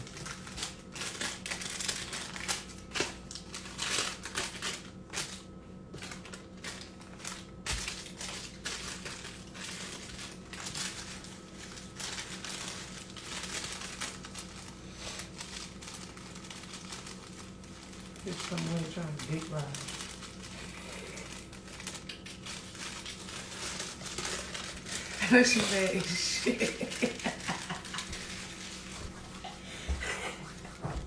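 Irregular crackling and rustling clicks over a steady low hum, with two short stretches of faint speech later on.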